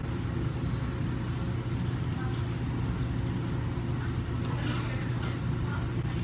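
Steady low hum of restaurant room noise, with faint voices in the background about two-thirds of the way through.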